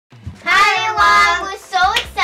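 A child's voice singing a short, high sung phrase: two long held notes, then a short rising note near the end.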